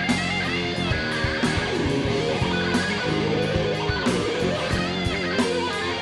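Live rock band playing an instrumental guitar solo section: a distorted electric guitar lead with wavering, bending notes over drums, bass and a second guitar.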